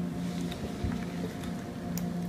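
Quiet studio control-room ambience: a steady low hum with a soft low bump a little under a second in and a few faint ticks.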